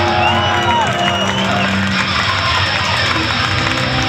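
Metalcore band playing live and loud: distorted electric guitars over drums, with a high held guitar tone and bending notes in the first second or so.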